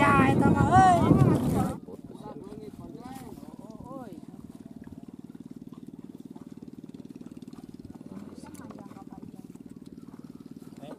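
Excited shouting voices for under two seconds, then a sudden switch to the steady running of a small motor with a fast, even pulse, with faint talk over it.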